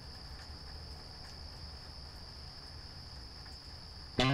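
Faint, steady high trill of crickets over a low rumble.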